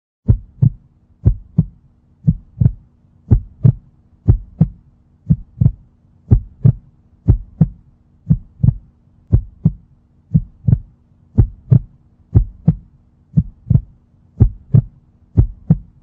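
Heartbeat sound effect: a steady lub-dub double thump repeating about once a second.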